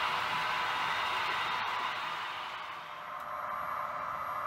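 A steady hiss that sinks lower about three seconds in, with a faint thin high tone in the last second.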